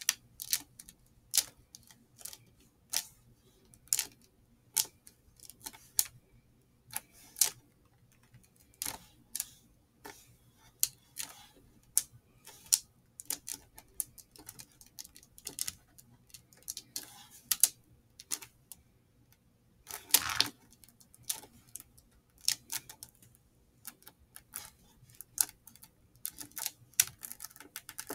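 Irregular light clicks and taps, one to three a second, as fingers press and roll a honeycomb beeswax sheet around a wick on a wooden table. A longer scuff comes about twenty seconds in.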